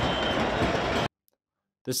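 Loud, dense crowd noise from a huge mass of celebrating football fans cheering and shouting together, which cuts off suddenly about a second in.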